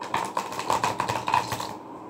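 A deck of oracle cards being shuffled by hand: a quick run of crisp card clicks, about six a second, that stops shortly before the end.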